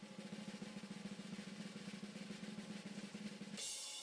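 A faint, fast drum roll from the Mega Ball game stream, a suspense sound over a steady low hum while the Mega Ball multiplier is drawn, with a hiss swelling near the end.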